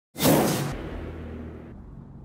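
Whoosh sound effect for an animated logo reveal: a sudden loud rush that cuts off after about half a second, then a low rumble that slowly fades away.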